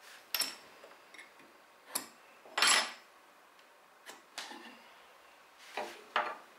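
Light clicks and taps of a steel tri-square being set against and moved on a wooden blank during marking out, with one short scrape a little under three seconds in.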